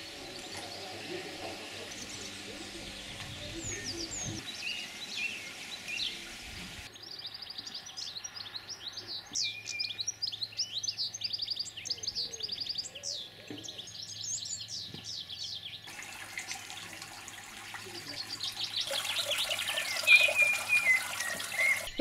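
Small songbirds singing and chirping, faint at first, then many rapid high song phrases from several birds, with a falling trill near the end.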